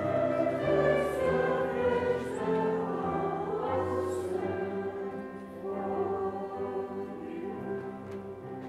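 Music: a slow choral hymn sung over held keyboard chords, growing softer near the end.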